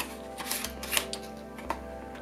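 Background music with a steady bass pulse, over a few short crackles and clicks of a cardboard box and clear plastic tray being handled as an SSD package is opened.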